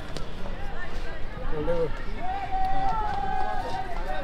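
People talking near the stall over a steady background of street noise.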